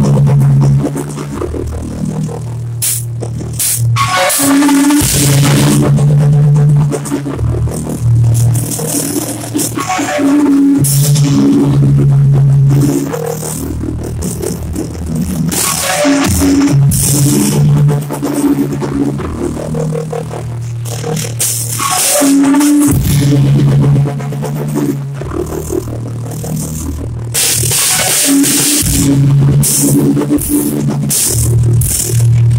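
Sludge metal from a studio album: a loud, distorted low-tuned guitar and bass riff in repeating phrases, with drums and crashing cymbals.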